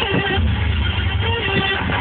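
Loud music with a heavy bass line playing on a car stereo, heard inside the car's cabin.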